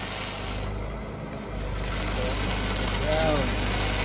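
Stick-welding arc crackling steadily as a downhill root pass is run on steel pipe. About a second in the crackle drops away for just under a second and then comes back, which fits the arc being broken and restruck to bridge a wide gap in the joint.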